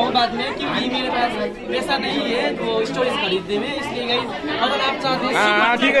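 Several people talking over one another in indistinct chatter.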